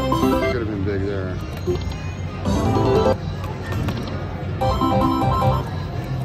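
Whales of Cash video slot machine playing its electronic reel and win jingles, short bursts of stepped tones recurring about every two seconds, over casino background noise.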